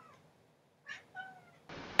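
Domestic cat meowing quietly: short, faint meows about a second in.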